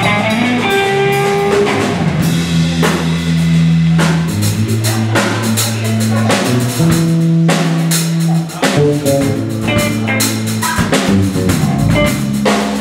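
A live blues band trio playing an instrumental passage: electric guitar lines over sustained electric bass notes and a drum kit keeping a steady beat. No singing.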